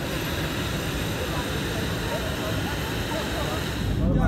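Steady rushing drone of a jet airliner's cabin, its engines and air system running, with a thin high whine on top. Faint voices of other passengers come through in the middle.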